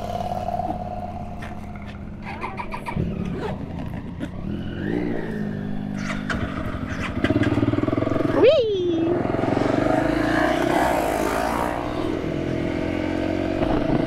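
Honda CRF300 Rally single-cylinder motorcycle engine idling, then pulling away, with the engine note rising as it accelerates. The later part is louder and carries more rushing noise as the bike gets under way.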